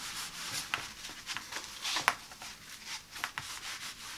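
Hands rubbing and smoothing across the pile of a woven area rug: a steady scratchy brushing, with a few sharper scrapes, the loudest about halfway through.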